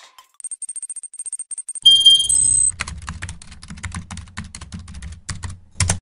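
Animated end-screen sound effects: a fast run of high electronic pips, then a bright ding about two seconds in. After that come computer-keyboard typing clicks over a low hum as the subscribe text is typed in.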